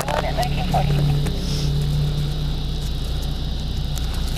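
Steady low hum of a car engine idling close by, with scattered brief scuffs and clicks of handling against a body-worn camera.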